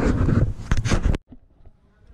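Rumbling, rustling handling and wind noise on a hand-held camera's microphone as it is swung about while walking. It cuts off suddenly just over a second in, leaving only faint background.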